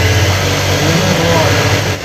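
Industrial lockstitch sewing machine running at speed as cloth is stitched: a loud, steady motor hum and needle whir that stops near the end.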